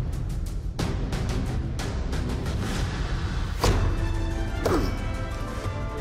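Dramatic background music with a steady beat, and about two-thirds of the way through one loud whack of a thin San Mai steel knife chopping into a wooden log, followed about a second later by a falling swoosh.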